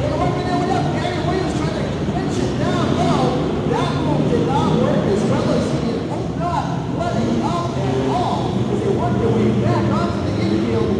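Several off-road race trucks' engines running and revving on a dirt track, their pitch rising and falling every second or so, echoing in a large indoor hall.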